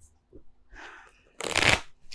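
A tarot deck being shuffled by hand: a soft rustle of cards, then a short, louder rush of cards about one and a half seconds in.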